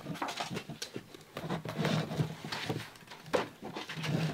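Pages of a new 160 gsm sketchbook being opened and turned by hand: soft paper rustling with scattered light taps and clicks, one sharper click a little past three seconds in.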